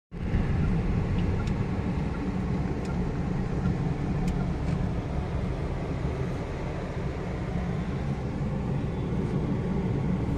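Steady low rumble of a car's engine and tyres heard from inside the cabin.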